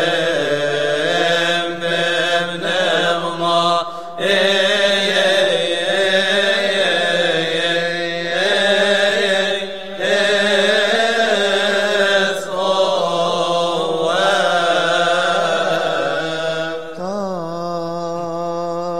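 Coptic liturgical chant: voices sing long, winding melismatic phrases over a steady low tone, with brief breaks between phrases.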